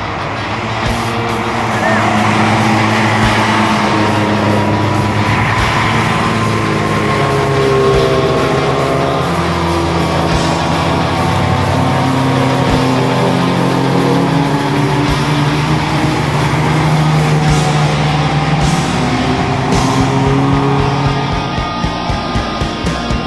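Engines of a pack of touring race cars running past together at moderate speed, several engine notes overlapping and shifting in pitch, with music playing over them.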